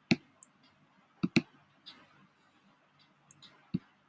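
Sharp, separate clicks at irregular intervals, including a quick double click just over a second in, like a computer mouse being clicked.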